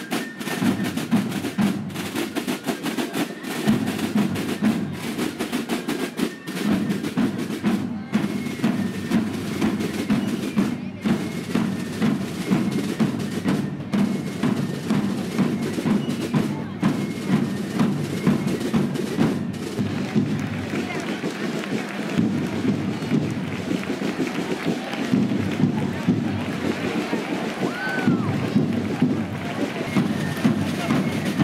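Massed snare drums of a marching drum corps playing a rapid, steady march rhythm, with rolls, as many drummers strike together.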